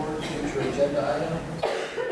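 Indistinct voices talking, with a short cough near the end.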